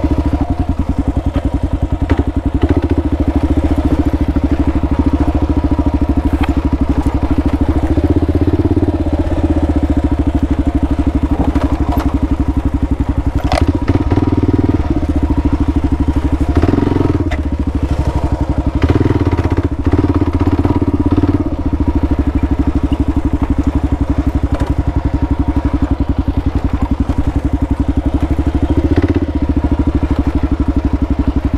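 Kawasaki KLR650's single-cylinder four-stroke engine running at low trail speed, swelling briefly several times as the throttle is opened over the rough ground. A few sharp knocks and clatters sound over it, the loudest about halfway through.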